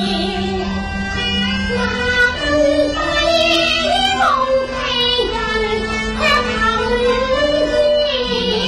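Female Cantonese opera singing: a high, ornamented voice sliding between notes, over traditional Chinese instrumental accompaniment with held notes underneath.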